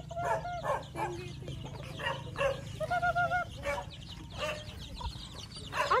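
Chickens clucking, with runs of quick repeated notes at the start and again about three seconds in.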